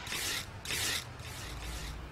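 A screen-printing squeegee drawn across a silkscreen in three separate scraping strokes, each under half a second long.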